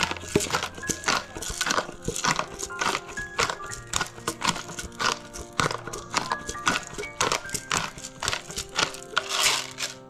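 Pepper grinder twisted over and over, a quick series of crunching rasps as black peppercorns are ground, over steady background music.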